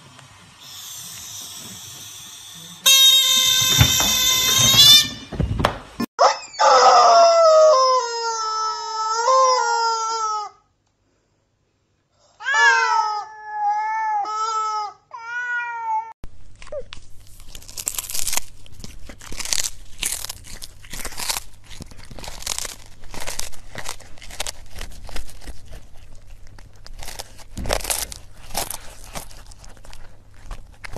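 Domestic cat meowing in a series of drawn-out calls that bend up and down in pitch, after a loud, steady, high squeal. Later comes a long spell of quick, crisp clicks.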